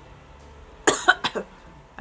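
A woman coughs twice in quick succession about a second in, set off by the loose face powder being brushed on.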